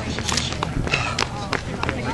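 Running footsteps slapping on asphalt, short sharp strikes at roughly three to four a second, with spectators talking in the background.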